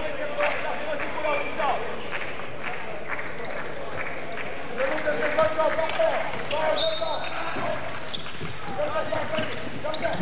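Handball game sound in an echoing sports hall: the ball bouncing on the wooden court amid the voices and shouts of players and spectators.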